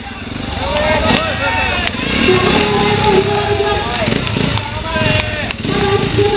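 Trials motorcycle engine idling with a steady low, rapid pulse, under a voice talking loudly.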